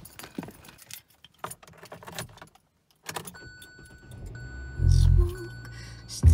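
Keys jangling, with many light clicks, for the first couple of seconds. After a brief cut, music comes in with a steady high tone and two loud deep bass swells near the end.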